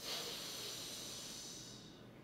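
A woman making one long, breathy hiss of pressurized air forced out between her teeth. This is the 'hee' sound of a singer's breath-support exercise, and it fades away near the end.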